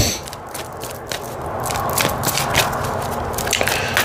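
A tarot deck being shuffled by hand: a run of quick light card clicks and a papery rustle that grows a little fuller in the second half.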